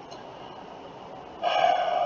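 Low room noise, then about one and a half seconds in a steady, breathy vocal sound from a man, held to the end.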